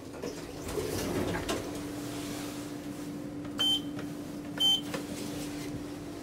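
Schindler elevator car: a steady low hum sets in after about two seconds, and two short electronic beeps about a second apart come near the middle, the car's arrival signal as the doors start to open.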